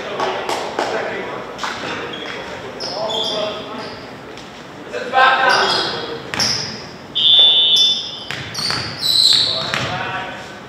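Volleyball players shouting and calling to each other in an echoing gym, with scattered ball bounces and thuds on the hardwood floor. About seven seconds in, a referee's whistle sounds briefly, the signal for the next serve.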